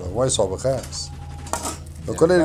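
A metal ladle clinking a few times against a pan, with a voice singing a repeated phrase during the first part.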